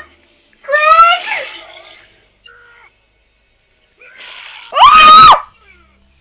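A woman cries out twice in shock: a short rising-and-falling cry about a second in, then a loud, high-pitched scream held for about half a second near the end.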